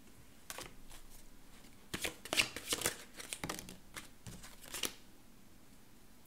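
A deck of tarot cards being shuffled by hand: a run of quick papery flicks and slaps, busiest a couple of seconds in, stopping about five seconds in.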